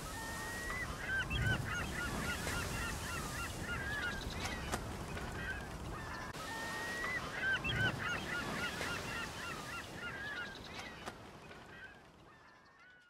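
A flock of birds calling over a steady hiss, with many short, wavering honking and squawking calls. The same few seconds of calls seem to play twice, and the sound fades out near the end.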